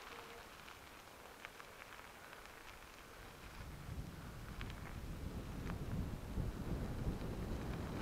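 Bicycle rolling along a gravel road: tyre crunch and wind rumble on the bike-mounted microphone, quiet at first and growing louder from about halfway through, with a few faint clicks.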